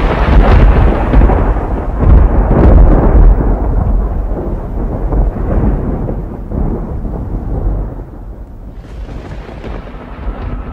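A long roll of thunder, loudest and heaviest in the first few seconds and slowly dying away, with a fresh burst of thunder near the end.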